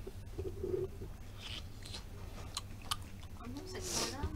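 People eating noodles at a table: quiet chewing, with a few sharp clicks of chopsticks and tableware late on, over a steady low room hum.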